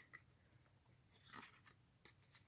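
Near silence, with a faint rustle of trading cards being handled and slid past one another about a second and a half in.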